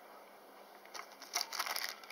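Clear plastic bag crinkling as the stone tool inside it is picked up and handled. It is a quick, irregular run of crackles that starts about a second in.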